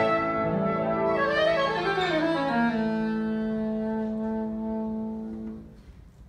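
A single-reed woodwind played live with piano: a quick downward run that settles on a long, steady low note, which stops just before the end.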